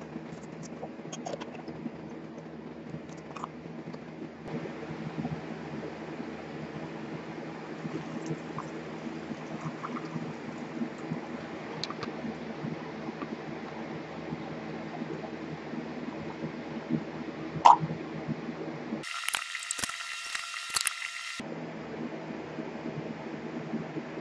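Diethyl ether being drained and poured through a plastic funnel into a glass flask, a faint trickling with small clicks over a steady low hum. A sharp glass clink comes about 18 seconds in.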